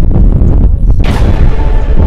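A loud, continuous rumbling boom, with a rush of hiss breaking in about a second in.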